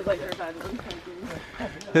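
Indistinct voices of hikers talking in the background, with a few footsteps on a rocky trail and a short laugh near the end.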